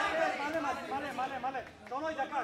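Several voices talking over one another.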